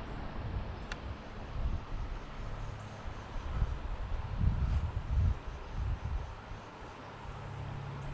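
Uneven low rumble of wind buffeting the microphone, with a single sharp click about a second in.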